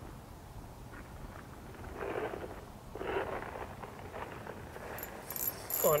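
Quiet outdoor ambience with faint clothing and handling noise and two soft breath-like puffs, then near the end a quick burst of rustling and light clicking as the ice-fishing rod is swept up to set the hook.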